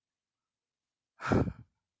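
Silence, then a little over a second in, one short breathy sigh from a woman.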